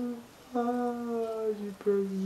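A man humming a wordless melody unaccompanied: a short note, then a long held note that sinks slightly in pitch, and a new note starting near the end.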